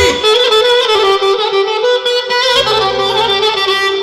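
Live band music from a clarinet and an electronic keyboard: a sustained, ornamented melody line over keyboard accompaniment, with bass notes coming in about two and a half seconds in.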